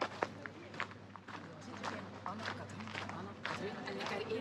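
Footsteps on paving with indistinct voices of people talking nearby, the voices growing clearer in the second half.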